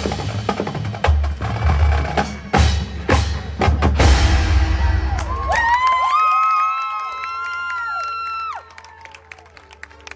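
Marching band: the drum line with bass drums plays loud, dense percussion hits for about five seconds. Then the wind section comes in with a chord that scoops up, holds and swells, and cuts off sharply about eight and a half seconds in.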